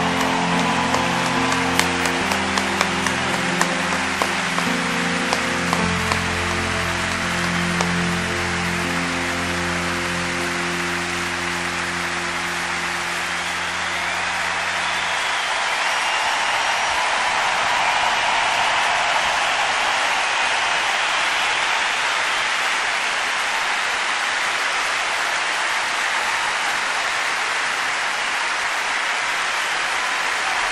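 A live recording of a slow ballad ends on long held chords under a large stadium crowd applauding and cheering. The music stops about halfway through, leaving the crowd's sustained applause, with a few sharp claps near the start.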